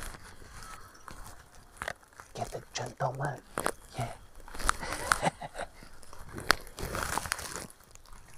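Close handling noise as a small glass of tea is passed to the camera operator and held: scattered light knocks, clicks and rustling near the microphone, with a few murmured words.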